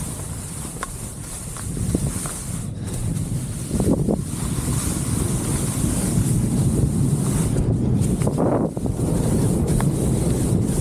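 Wind rushing over the camera microphone while skiing downhill, over the hiss and scrape of skis on slushy spring snow. The noise grows louder from about four seconds in, with two stronger swells.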